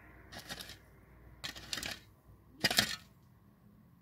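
Shovel blade digging and scraping into stony, gravelly soil with a gritty clinking, three strokes about a second apart, the third the loudest.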